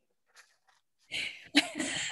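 About a second of near silence, then a woman's short breathy laugh through a video-call microphone.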